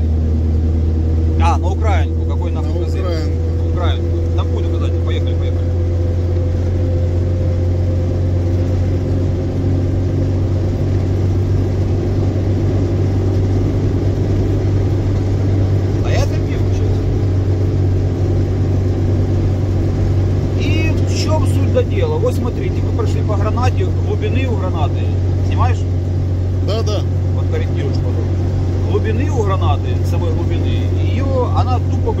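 Cabin drone of an off-road vehicle on the move: a steady low engine and road rumble, with a whine that rises slowly over the first ten seconds.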